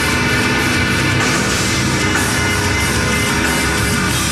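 Industrial metal band playing live, loud and dense: distorted guitars, bass and drums.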